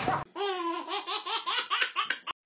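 A person laughing in a quick, even run of 'ha-ha-ha' pulses, about five a second, starting abruptly a quarter second in.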